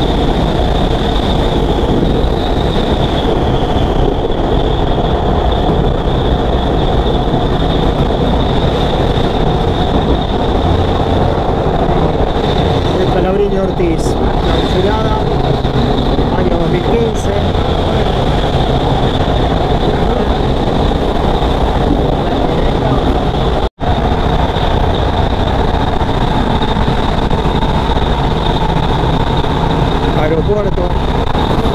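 Belgrano Norte commuter train running at speed, heard from a coach window: a steady rumble of wheels on the rails and the rush of passing air, with a steady high-pitched whine over it. The sound drops out for an instant about three-quarters of the way through.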